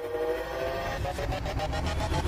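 Logo sting sound effect: a swelling chord of held tones, rising gently in pitch, over a low rumble that grows louder.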